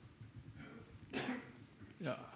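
A person's brief vocal sound a little over a second in, after a few faint noises in an otherwise hushed room.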